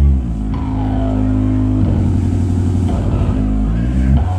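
Live doom/stoner rock band playing: distorted electric guitar and bass hold long, low notes, and the riff picks back up near the end.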